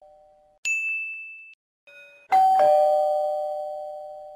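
A single high "ting" chime that fades within about a second. About two seconds in comes a doorbell ding-dong: a high note, then a lower one, both ringing on and slowly dying away.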